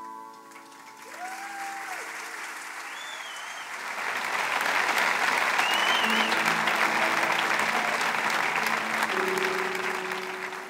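Concert audience applauding, building over the first few seconds and loudest through the middle, with a few cheers and whistles over it. A couple of sustained instrument notes come in near the end as the applause eases.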